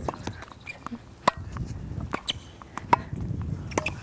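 Tennis balls being struck by rackets: a string of sharp pops at irregular spacing, the strongest roughly a second apart, as balls are fed and volleyed back.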